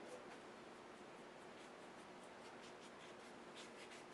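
Faint brushing of a paintbrush on paper, with a few soft strokes near the end over a low hiss.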